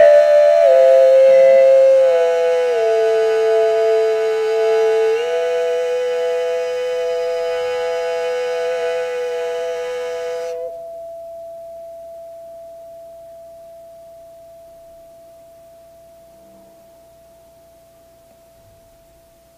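A woman sings long held notes that step between a few pitches over the steady ring of a brass singing bowl, which is being rubbed around its rim with a wooden mallet. The voice stops about ten seconds in, and the bowl's single tone rings on alone, slowly fading away.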